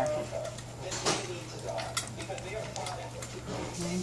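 Small dogs eating kibble and egg from stainless steel bowls: irregular crunching and small clicks of food and teeth against the metal.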